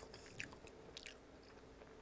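Near silence with a few faint, short, wet mouth clicks of chewing.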